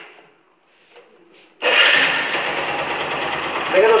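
Small motorcycle engine starting abruptly about one and a half seconds in, then running steadily at idle with its pickup coil reconnected: the bike starts and runs, so the ignition is firing.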